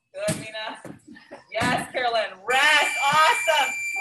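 A person's voice with pitched, gliding syllables in several bursts, joined in the second half by a thin steady high tone.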